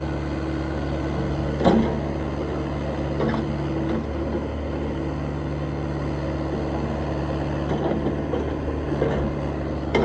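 Cat 305 E2 mini excavator's diesel engine running at a steady pitch as the boom and bucket move, with one short knock about two seconds in.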